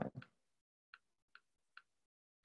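Three faint, sharp computer mouse clicks about 0.4 s apart, from clicking the Run button to execute notebook cells.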